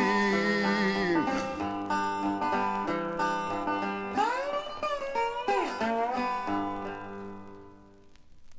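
Blues guitar playing a song's closing phrase: picked notes with bent strings over a held chord, fading out toward the end.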